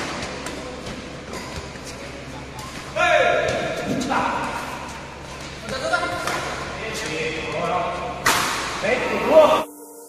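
A badminton doubles rally: sharp racket strikes on the shuttlecock and footwork thuds, the loudest strike about eight seconds in. Players' shouts and voices come in three short bursts. The sound cuts off suddenly just before the end.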